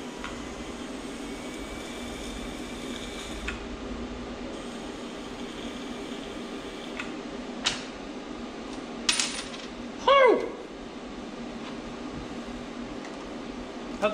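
Small metal transmission parts clinking against each other a few times over a steady shop hum, with a short squeak falling in pitch, the loudest sound, about two-thirds of the way through.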